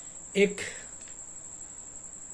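A steady, faint high-pitched tone, like a cricket's continuous trill, under a pause in speech, with one short spoken word about half a second in.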